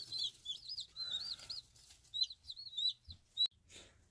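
Brood of five- or six-day-old chicks peeping, many short, high, rising-and-falling peeps overlapping. Near the end there is a sharp click and a brief rustle, and the peeping stops.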